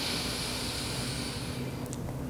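A person's long, full inhale through the nose, heard as a steady soft hiss that fades near the end.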